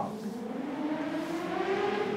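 Chalk squeaking on a blackboard while a long line is drawn: one drawn-out squeal that rises slowly in pitch for about two seconds, with a light scratch under it.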